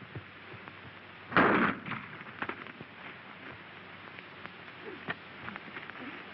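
A single loud bang about a second and a half in, followed by faint scattered clicks over the steady hiss of an old film soundtrack.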